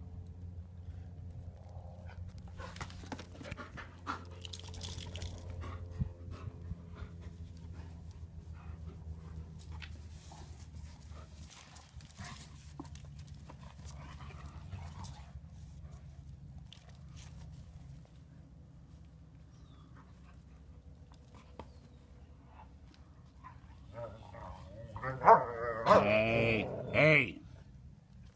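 Two young German Shepherds play-fighting: scuffling and intermittent dog vocal sounds, with a louder dog vocal outburst near the end.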